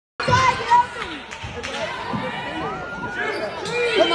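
Basketball bouncing a few times on a hardwood gym floor, mostly in the first two seconds, with voices calling and talking around it in an echoing gym.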